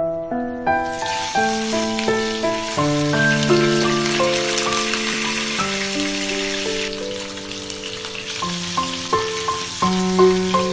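Fish heads frying in hot oil in a wok, a steady sizzle that starts about a second in, under piano music.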